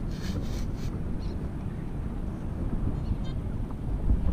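Wind buffeting the microphone in a steady low rumble.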